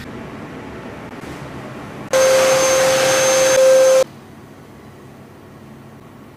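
Electric clippers shaving fur, a steady motor buzz with a sustained hum. It comes in loud about two seconds in and cuts off suddenly about two seconds later.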